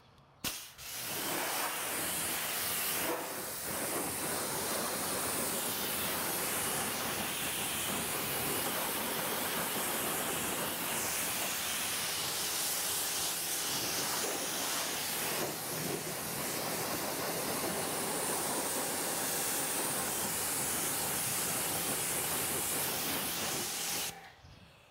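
Pressure-washer water jet spraying onto a car's wheels and tyres, rinsing off foamed wheel cleaner: a steady hiss of spray that starts about half a second in and dips briefly twice.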